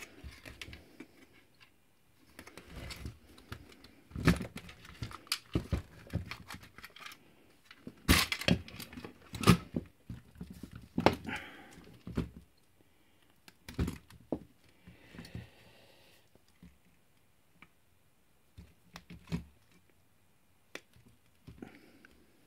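Hands working the main circuit board and its wiring loose from a portable CRT TV's plastic case: irregular clicks, knocks and rustles of board, wires and plastic, loudest a little before the middle and sparser near the end.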